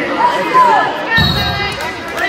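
Wrestlers scrambling on a wrestling mat: a dull thud with a brief high squeak a little past a second in, over spectators' shouts.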